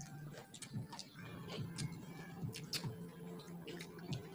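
Quiet eating sounds: scattered small clicks and smacks of chewing and of fingers picking food off ceramic plates, at irregular times, over a faint low hum.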